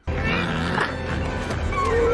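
Movie soundtrack cutting in suddenly: orchestral music under a dense bed of effects, with growling, roaring creature sounds.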